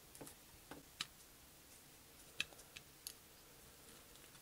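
A few faint, sharp clicks and light taps from a small diecast toy car being handled and pressed together by gloved hands. The clearest clicks come about a second in and near two and a half seconds.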